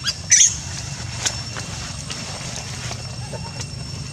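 Baby macaque in dry leaf litter: one short, sharp, high-pitched sound about a third of a second in, then a couple of faint clicks, over a steady low hum.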